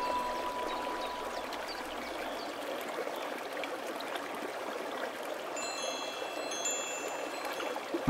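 Steady hiss of flowing stream water. A few faint, high wind-chime tones ring out about six seconds in.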